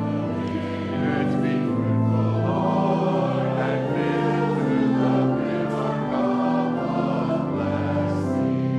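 Congregation singing with organ accompaniment, in steady sustained phrases.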